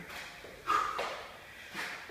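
Sneakers scuffing and landing on a rubber floor mat as the feet step forward and back during Spiderman climb reps, two short sounds about a second apart, the first the louder, with hard breathing between.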